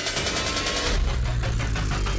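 Electronic show soundtrack over a hall's sound system: a fast, even pulsing for about the first second, then a deep, steady low rumble.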